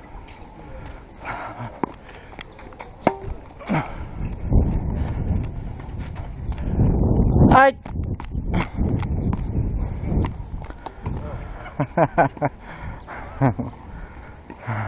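A tennis player on a hard court moving with a body-worn camera: scuffing footsteps and rumble from the camera's movement, with sharp knocks of ball and racket throughout. A short wavering squeal about halfway through is the loudest moment, and short calls come near the end.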